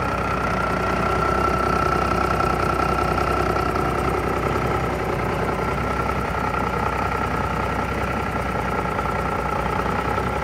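Heavy truck diesel engine idling steadily, with a steady high-pitched whine running above the engine noise.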